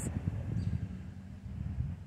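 Wind buffeting the phone's microphone: an uneven low rumble that eases off toward the end.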